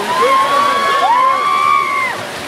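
Riders on a flipping gondola amusement ride screaming together as the gondola swings over the top: several long, held screams, another voice sliding up into them about a second in, all breaking off near the end.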